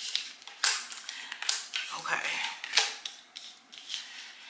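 Tarot cards being handled, with four short sharp snaps of the cards over about three seconds.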